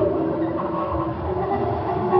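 Tarhu, a bowed spike fiddle, played in long held notes over a low rumbling drone.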